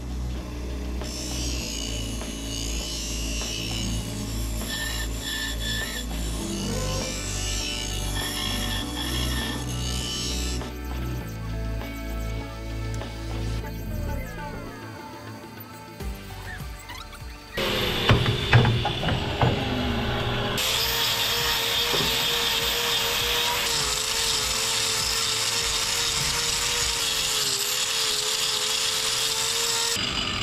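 Background music for about the first half. Then, at about 17 seconds in, a bench grinder starts with a few clicks and runs steadily, a constant hiss with a slightly wavering hum, as hoof knives are sharpened on it.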